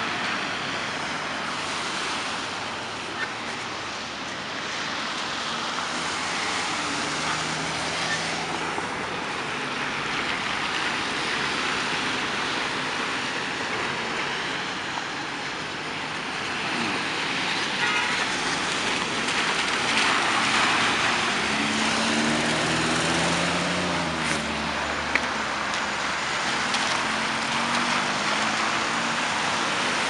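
Road traffic: cars and trucks driving through an intersection on wet pavement, with a steady wash of tyre and engine noise. It grows louder about two-thirds of the way through, when engine hum from passing vehicles comes up.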